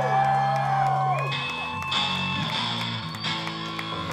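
Electric guitar rig humming and ringing between songs. A held low chord or hum drops out about a second in, followed by a high-pitched feedback whine for a second or two.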